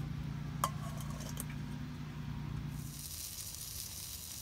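A low steady hum with a single metal clink about half a second in; near three seconds the hum stops and bratwursts start sizzling on a hot metal steamer basket.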